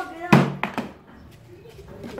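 A single sharp knock about a third of a second in, among brief children's voices.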